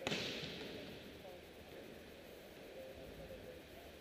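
A volleyball struck once, a sharp smack right at the start that echoes through the large hall for about a second.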